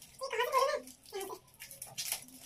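A short wordless voice sound, then a second brief one, followed by light crinkling and crackling as a paper and foil wrapping is picked open by hand.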